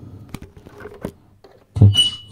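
Two faint clicks about two-thirds of a second apart, from handling at a small mixing desk as something on it is switched on, over a faint low hum. A short spoken word near the end.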